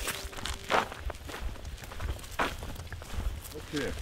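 Footsteps on a dry dirt footpath, a few scattered steps over a steady low rumble.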